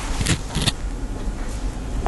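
A man coughing twice in quick succession with his hand at his mouth, over a steady low hum.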